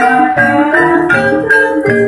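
Jaranan gamelan accompaniment: struck metallophones ringing a busy, repeating melody over a regular low beat.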